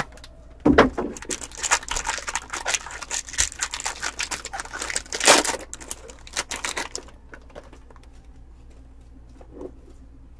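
Silver foil wrapper of a 2020 Bowman Draft Sapphire Edition card pack being torn open and crinkled by hand. It is a dense crackling that stops about seven seconds in, followed by faint card handling.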